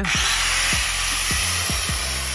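Handheld angle grinder cutting through a steel bar of a window security grille: a loud, steady, hissing grind with a high whine, held throughout.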